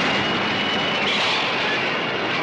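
Film sound effect of a gale-force wind blowing steadily through a room, the supersonic wind from a giant monster's wings.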